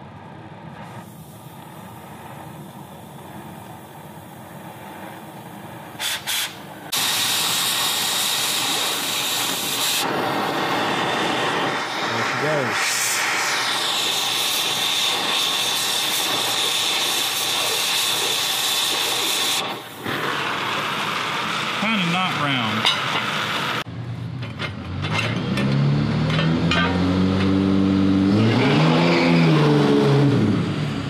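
Oxy-acetylene cutting torch hissing as it blows a hole through steel plate. About seven seconds in it becomes a much louder, steady hiss that lasts until about twenty seconds in. Near the end a passing vehicle's engine rises and falls in pitch.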